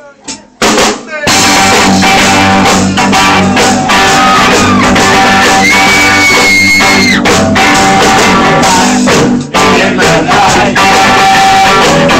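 Live rock band starting up: a couple of sharp hits, then from about a second in loud electric guitar, bass and drums playing a driving rhythm.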